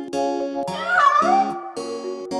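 A single cat meow about a second in, sliding up and then down in pitch, over an instrumental children's tune with a steady pulse of plucked notes.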